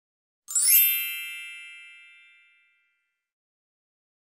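A single bright bell-like chime sound effect about half a second in, ringing out and fading over about two seconds, marking a step being checked off on the robot's task list.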